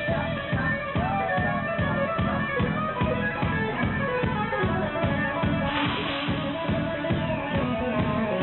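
Live hard rock band: a Flying V electric guitar plays over bass and drums with a steady driving beat. A bent guitar note is heard about a second in, and a cymbal crash near six seconds.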